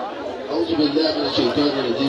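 A man's voice over a microphone and loudspeaker, with the chatter of a gathered crowd behind it.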